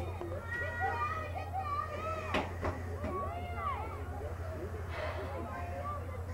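Several girls' voices calling and shouting over one another across the soccer field, with a single short knock about two and a half seconds in, over a steady low hum.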